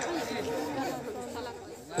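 Faint, indistinct chatter of background voices.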